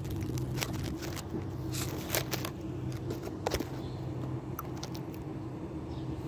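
Clicks, knocks and light scrapes from a phone being handled and set down behind a stone, over a steady low mechanical hum.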